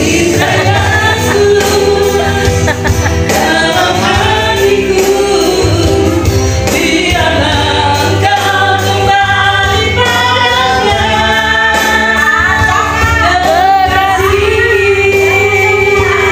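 Amateur singing into a microphone over a backing music track with a steady bass line, the melody sung in long held notes.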